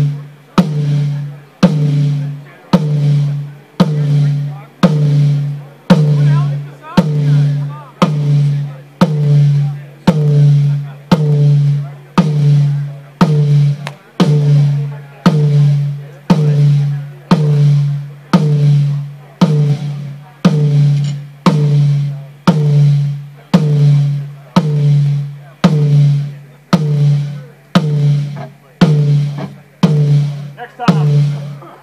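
Rack tom on a drum kit struck once about every second, each hit ringing out with a low pitched tone that fades before the next, as the tom is checked channel by channel in a sound check.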